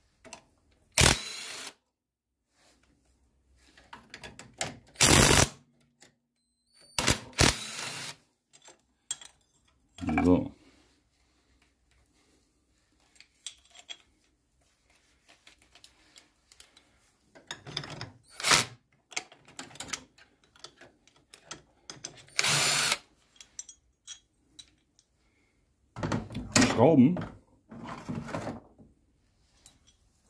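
A handheld power tool run in several short bursts of half a second to a second, undoing the bolts of a car's engine mount, with quiet gaps and small tool clinks between.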